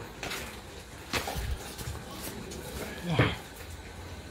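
Rustling and handling of a newspaper-wrapped bunch of kemangi (lemon basil) leaves, with a sharp click about a second in.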